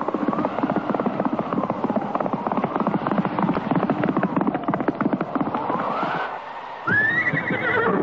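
Horse hooves galloping in a fast, dense rhythm under a wavering whistle-like tone. Near the end the hoofbeats stop and a horse whinnies with a rising-then-falling call.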